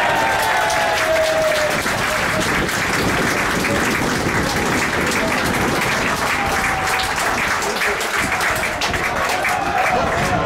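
Football crowd applauding and cheering a goal: steady dense clapping, with a few voices shouting over it in the first couple of seconds.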